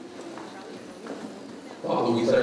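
Low, indistinct speech in a large room, with a few light knocks. A man's amplified voice comes in loudly near the end.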